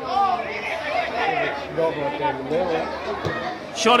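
Several voices chattering and calling out, quieter than the commentary.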